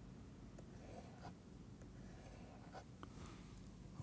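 Near silence: faint room tone with a few soft ticks and light scratching from a stylus drawing on a tablet screen.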